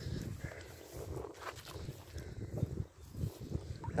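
Landing net being lowered into muddy river water to release a fish: low, irregular rustling with soft knocks and faint water movement.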